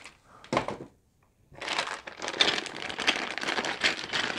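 Clear plastic bags of construction-kit parts crinkling and rustling as they are picked up and handled. A short rustle comes about half a second in, then a brief gap, then continuous crinkling.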